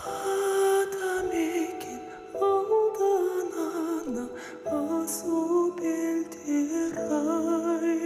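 A male vocalist singing a slow, sustained melody with wavering vibrato on held notes, over soft instrumental accompaniment.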